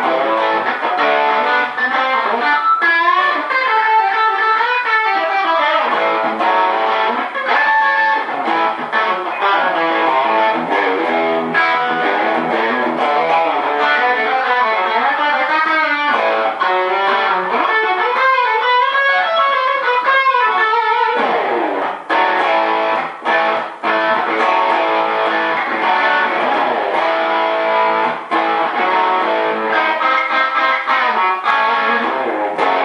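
Overdriven electric guitar: a Gibson Custom Shop '57 Les Paul Junior reissue with a Seymour Duncan Custom Shop '78 Model humbucker, played with light compression through a Fender Deluxe Reverb amp. It plays rock lead lines with bent notes, then a long downward slide about two-thirds of the way through leads into chords.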